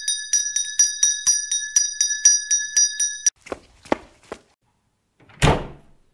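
Electric school bell ringing, a rapid clatter of about five strikes a second on a high metal tone, cutting off suddenly about three seconds in. A few knocks follow, then a short swish near the end.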